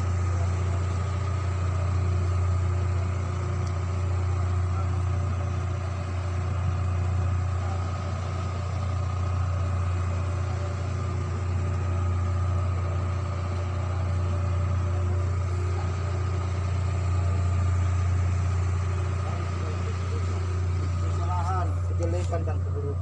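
Steady low drone of a ship's machinery running, with fainter steady hum tones above it and no change in level.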